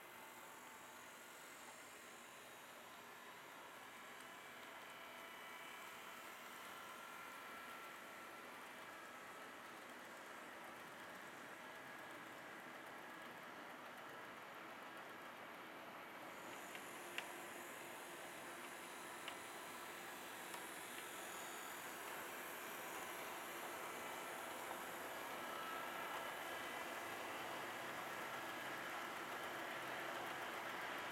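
HO scale model trains running on the layout: a faint, steady whir of motors and wheels on the rails that grows slowly louder. A few sharp clicks come a little past halfway.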